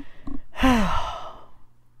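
A woman's voiced sigh, one breathy exhale that falls in pitch, starting about half a second in and fading out within a second.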